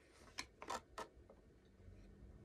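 Tarot cards being handled and pulled from the deck: three crisp snaps in about half a second, then a fainter one, after a soft rustle of card edges.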